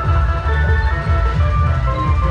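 Loud electronic dance music with a heavy, pulsing bass beat and a high synth melody of short stepping notes.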